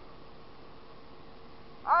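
Faint, steady running noise of a 2014 Yamaha Zuma 50F scooter (49 cc four-stroke single) being ridden, with a thin steady whine through it. A man's voice starts near the end.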